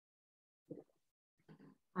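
Near silence broken by two short, soft mouth and throat noises from a person, about two-thirds of a second and a second and a half in, the second leading straight into speech.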